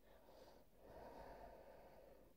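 Near silence with a faint, drawn-out breath starting about half a second in.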